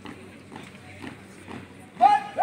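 Marching drill squad's boots striking a concrete court in unison, about two footfalls a second.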